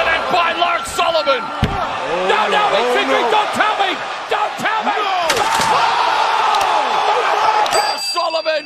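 Wrestlers' bodies slammed onto the ring canvas, with a heavy thud about one and a half seconds in and a few sharper impacts later, over a steady din of arena voices yelling.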